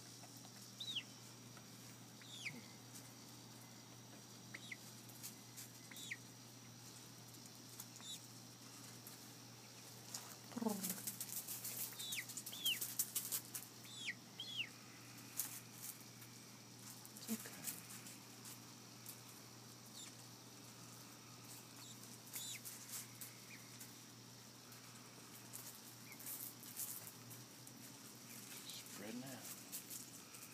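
Chicken giving faint, short, high peeps that slide downward in pitch, one every second or two, as a young hen settles to roost. A patch of feather rustling and wing flapping comes about a third of the way in.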